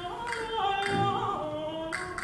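Mezzo-soprano singing an operatic melody in held, gliding notes, with a few sharp clicks between the phrases.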